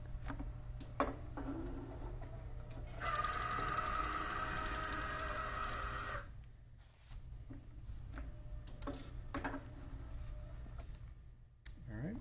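SMT PCB transfer conveyor's belt drive motors running with a steady whine for about three seconds as a circuit board is carried down the line, then stopping abruptly. A low steady hum runs underneath, with a few short clicks before and after.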